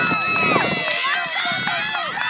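Several voices shouting and cheering at once, high-pitched yells overlapping, as people urge on a run in a youth flag football game.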